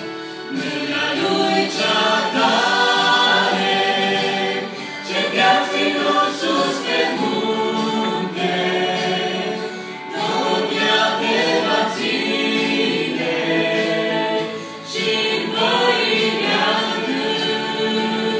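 Small mixed vocal group of three men and three women singing a Christian worship song together in harmony, several voices at once with no break.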